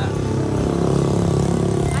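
A motor vehicle engine running close by, swelling in level through the middle and dropping away near the end.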